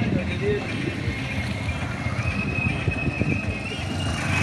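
Busy outdoor street sound: voices and vehicle noise with many irregular low knocks. A high steady tone is held for about a second and a half, from a little past the middle to near the end.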